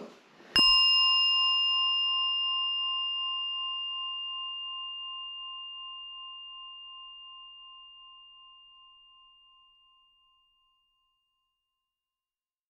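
A single strike of a small bowl bell, the 'chiin' comic sound effect of disappointment, rings out about half a second in and fades slowly over some nine seconds.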